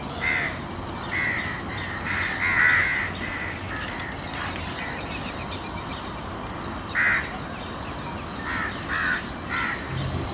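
Bird calls in short bursts, one just after the start, a cluster about one to three seconds in and several more from about seven seconds on, over a steady background hiss.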